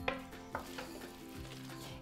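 Wooden spoon stirring a wet, chunky burger mixture in a bowl, with a soft scraping and a couple of light knocks early in the stroke.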